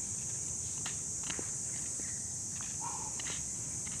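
Steady high-pitched insect chorus, such as crickets, with a few faint footsteps on grass and soil.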